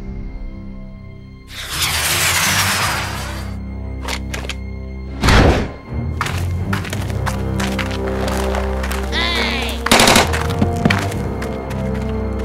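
Film score soundtrack music over sustained low notes, with sound effects layered on: a swelling swoosh about a second and a half in, then a series of sharp bangs and hits, the loudest near the middle and another strong one near the end.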